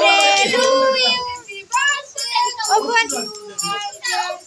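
A small group singing together, a child's high voice among them, with held notes that end about a second and a half in; then short, high-pitched children's calls and chatter.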